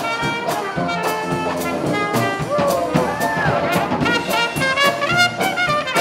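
Live Dixieland jazz band playing, trumpet and trombone leading over a steady drum beat.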